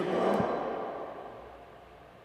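Pause in a woman's speech: the reverberation of her voice in a large church dies away over about a second and a half. It leaves faint room tone.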